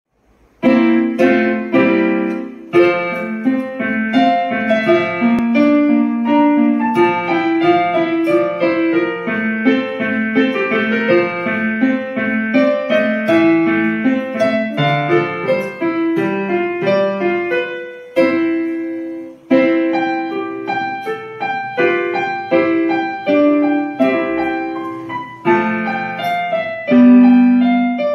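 Solo piano music: a continuous run of melody notes over chords, starting just under a second in.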